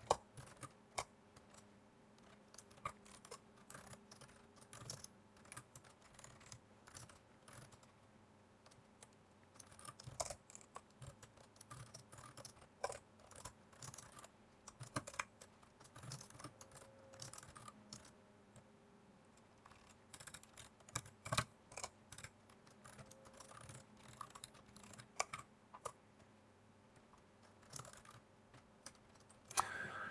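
Computer keyboard typing, faint: irregular short runs of keystrokes with pauses between them.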